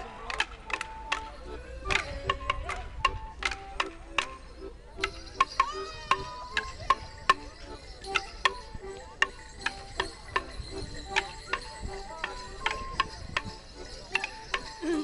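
Border morris dancers' wooden sticks clashing together in sharp, irregular cracks, several a second, over a folk tune played in time with the dance.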